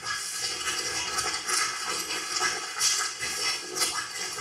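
Improvised sound-poetry performance: a dense, hissing rush of noise that swells and falls in irregular bursts, with no words.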